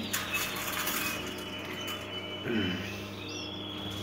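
Canaries in a breeding cage: soft wing flutter and faint chirps, over a low steady hum.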